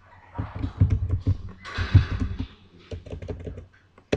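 Typing on a computer keyboard: an irregular run of keystroke clicks.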